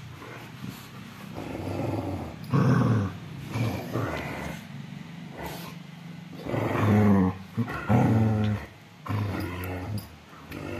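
A Rottweiler and a Labrador Retriever puppy growling at each other in play as they tug at a ball toy, in several bouts of low growling, the loudest about seven to eight seconds in.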